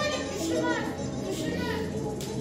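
A girl reciting poetry aloud in Turkish in a declamatory voice, with music playing underneath.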